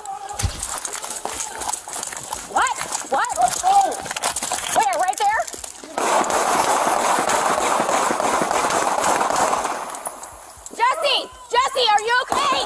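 Raised, shouting voices picked up by a police body camera, with unclear words, in two bursts near the start and near the end, and about four seconds of steady rushing noise between them.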